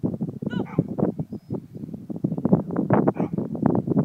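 A dog gives one short bark about half a second in, over loud, rapid, irregular thumping and rustling.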